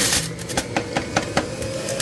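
Electric juicer's loud motor noise cuts off just after the start, leaving a run of evenly spaced ticks, about five a second, that come slightly further apart near the end as the juicer spins down.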